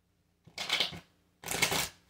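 Tarot cards being shuffled by hand: two short bursts of card rustling, about a second apart.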